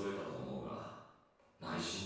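A voice speaking softly and trailing off into a sigh, then speaking again after a short pause about a second and a half in.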